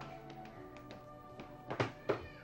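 Soft background score with sustained tones, with a few light taps and then two louder, sharper knocks near the end.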